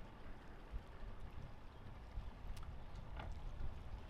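Faint, steady outdoor background noise: a low rumble under a soft hiss, with a couple of faint ticks in the second half.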